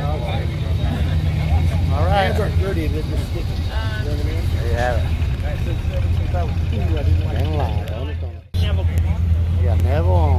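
Low, steady engine rumble of classic cars idling and creeping past at walking pace, a C1 Corvette nearest, under people talking. The sound breaks off for an instant about eight and a half seconds in, then the rumble carries on.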